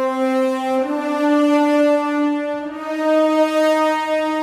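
A sampled French horn section (an epic horns legato patch layered from several horn sample patches) plays long, held notes as a slow legato line. The pitch steps up about a second in, the sound dips briefly partway through, and it carries on sustained.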